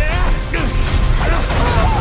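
Film-trailer soundtrack: music layered with go-kart racing and crash sound effects. Under it runs a deep, steady rumble, with many short gliding squeals and whistles on top.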